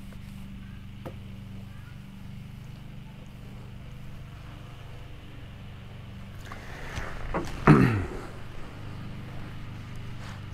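A steady low motor hum runs throughout. A single click comes about a second in, and a short sound falling steeply in pitch stands out about three-quarters of the way through.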